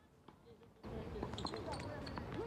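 Tennis ball being struck by rackets and bouncing on a hard court during a doubles rally: a few sharp knocks. A louder noisy background with voices comes in just under a second in.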